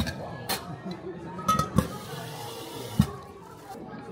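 Espresso-bar sounds over background chatter: sharp knocks and clinks of metal milk pitchers on the bar and a short rush of water from the pitcher rinser, with the loudest knock about three seconds in.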